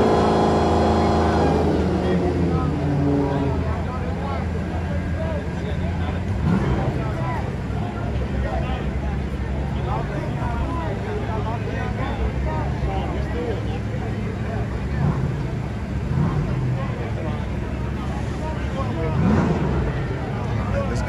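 Crowd chatter over the steady low rumble of drag-race engines idling near the start line. In the first few seconds a revved engine falls in pitch as it comes off the throttle.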